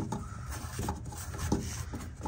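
Faint rubbing and a few light, scattered knocks from handling a tonneau cover's drain tube as it is tucked into its hole in the truck bed.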